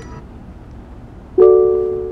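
Ford SYNC voice-command chime: one bell-like tone about a second and a half in, ringing and fading over a second, after the music playback has dropped away. It is the system's cue that it is listening for a voice command.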